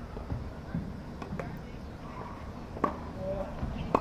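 Sharp pops of a tennis ball being struck by racquets and bouncing on a hard court during a rally, four in all, the loudest two near the end, over a steady low rumble.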